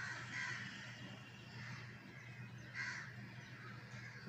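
A bird calling faintly three times in short, harsh calls over a steady low hum.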